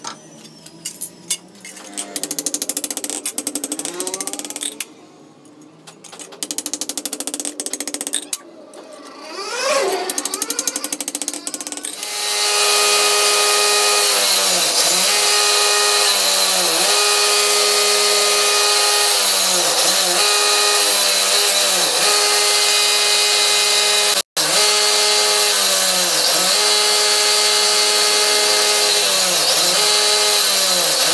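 Steel sheet clattering and scraping as it is handled and cut on a manual lever shear. From about twelve seconds in, a hand file is worked steadily along the edge of a steel plate clamped in a bench vise: a continuous loud rasp with a ringing tone that dips at each stroke, about every two seconds.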